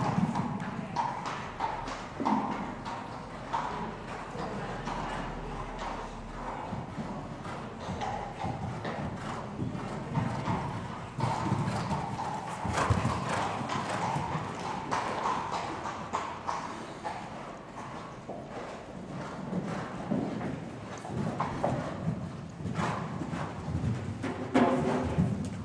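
A horse cantering and jumping on sand arena footing, its hoofbeats in a steady run of dull knocks.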